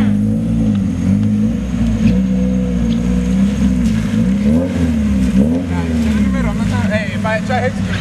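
A car engine revving, its pitch rising and falling over and over as the car is driven hard on a wet lot.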